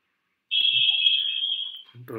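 A single loud, high-pitched steady tone, like an alarm or beeper, starting about half a second in and lasting about a second and a half before fading out.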